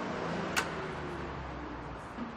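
Steady street background noise with a low traffic hum. About half a second in there is one sharp click, the latch of a café's glass door as it opens.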